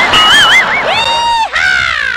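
A loud, high, whistle-like sound effect: a note wavering rapidly up and down, then a held note, then a falling glide, over a noisy, crowd-like background.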